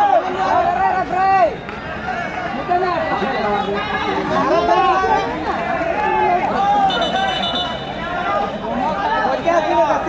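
Several men's voices talking and chattering close by throughout, with a short, high, steady referee's whistle blast about seven seconds in.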